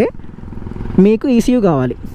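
A low, steady vehicle engine rumble in a pause, then a man talking over it from about a second in.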